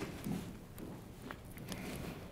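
Faint room noise with a few soft clicks and taps as thin brick is handled and pressed onto an adhesive-coated wall.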